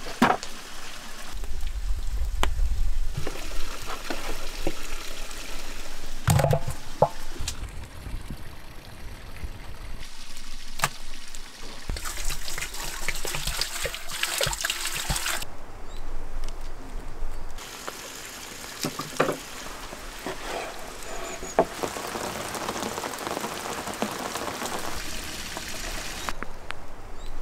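Kitchen sounds from several short takes with abrupt changes between them: knocks and handling of raw meat on a wooden board, and water pouring in a stream onto pieces of head and trotters in a pot.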